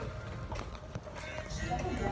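Soft rustling of clothing with a few faint clicks as tear-away athletic pants are handled at the waistband, under a low rumble of movement close to the phone.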